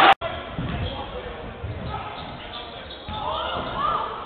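A basketball dribbled on a hardwood court, a few dull thuds in a large hall, with a voice shouting near the end.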